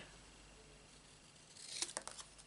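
Scissors cutting through a strip of card: a short snip near the end, with a couple of sharp clicks from the blades.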